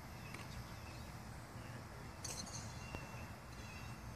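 Quiet outdoor ambience: a steady low rumble with a few faint, short, high bird chirps, a brief faint hiss about two seconds in and a faint click near the end.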